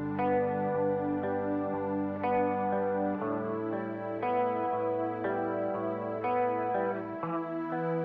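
Instrumental band music led by electric guitar: sustained chords changing about once a second over held bass notes.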